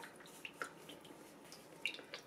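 Vegetable oil poured from a plastic bottle into a stainless-steel skillet: a faint liquid trickle with small irregular drips and glugs.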